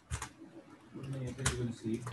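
Two sharp clicks about a second and a half apart, over faint, low voice sounds.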